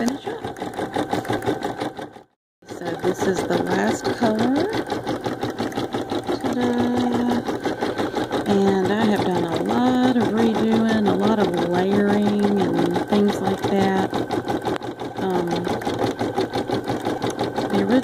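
Baby Lock Ellure Plus embroidery machine stitching steadily at speed, a fast, even needle chatter, cut off for about half a second a little over two seconds in. A voice is faintly heard behind the machine in the middle of the stretch.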